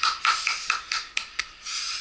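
Sparse hand clapping by a few people, sharp single claps coming irregularly at about three or four a second.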